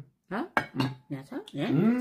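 A spoon clinking and scraping against a glass serving bowl of curry, several short clinks as food is scooped out.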